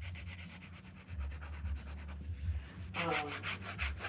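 Pencil sketching on a journal page: a run of quick, even strokes scratching across the paper.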